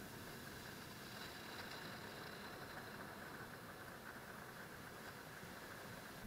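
Faint, steady rush of ocean surf breaking on the shore.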